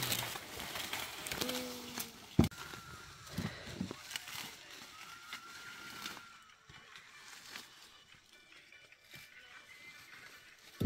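Faint rustling and crackling of dry corn stalks and leaves being brushed through, with one sharp snap about two and a half seconds in. It fades to near quiet after about six seconds.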